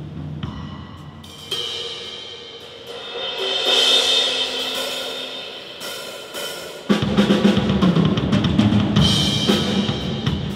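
Solo on a Yamaha drum kit: a softer opening with ringing cymbals that swells and fades, then about seven seconds in the full kit comes in loudly with bass drum, snare and cymbals in fast strokes.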